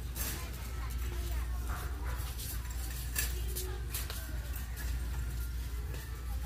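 Big-box store aisle ambience: a steady low hum with faint background voices and store music. Scattered clicks and rattles come as a loaded shopping cart is pushed up the aisle.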